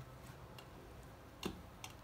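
Light clicks of a metal scraping tool knocking against a wooden hive frame as honeycomb is cut off into a steel bowl: two sharp ticks near the end, the first the louder, with a few fainter ones before.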